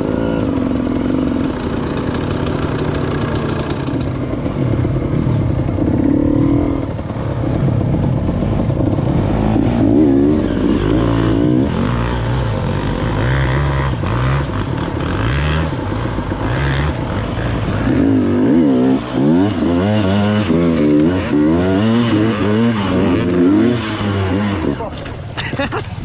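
Enduro dirt bike engines, the nearest being the helmet-camera rider's orange KTM, revving hard and repeatedly up and down in pitch while climbing a steep forest slope. Near the end the engine note falls away as the bike goes down.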